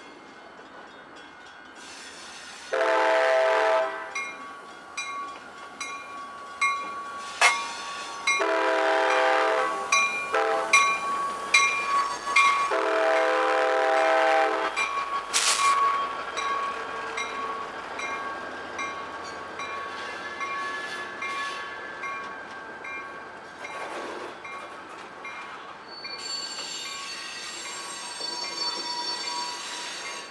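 CSX diesel freight locomotive sounding its horn in three blasts of about a second and a half each, then rolling past with its freight cars. The wheels click regularly over the rail joints, and a high squeal rises from the wheels on the rails near the end.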